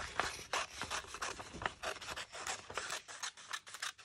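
Scissors snipping through a glossy magazine page, a quick irregular run of short cuts, several a second, with the paper rustling as it is turned.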